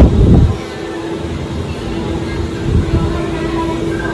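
Steady low hum of a Disney Skyliner gondola station's machinery, under a low rumble of wind on the microphone that is loudest in the first half second.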